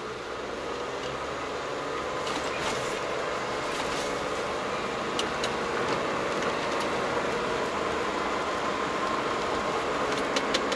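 Car cabin noise, tyres on a wet road and the engine, growing louder over the first few seconds as the car pulls away and gains speed, then holding steady. A few light clicks come in the middle.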